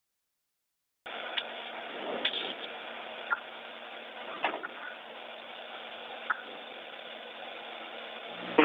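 Steady hiss and hum of the space station's cabin ventilation, heard over a narrow-band downlink, starting about a second in. A few short clicks and knocks from crew handling at the hatchway break through it.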